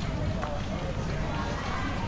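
Footsteps on paving stones under a steady low rumble of city noise, with faint voices of passers-by.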